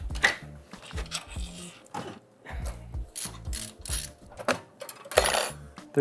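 A run of quick light clicks and clatter of metal PC parts and screws being handled as a desktop computer is taken apart, over background music with a low bass line.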